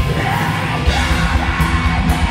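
Black metal band playing live: harsh screamed vocals come in just after the start, over distorted electric guitar and dense drumming.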